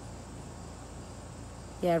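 Crickets keeping up a faint, steady high chirring in the background, with a quiet outdoor hiss. A woman's voice comes in near the end.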